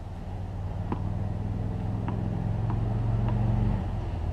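A low motor hum, like a road vehicle's engine, building up and cutting off shortly before the end, with four faint ticks of a tennis ball being bounced on a hard court.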